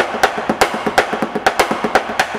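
A drum kit played in a quick, even rhythm of sharp strikes, about eight a second, on the toms and drums.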